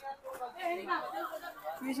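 People talking nearby, a murmur of several voices at moderate level.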